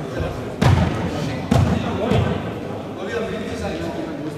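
Two sharp thumps about a second apart, then a lighter knock, each ringing briefly in the echo of a large sports hall.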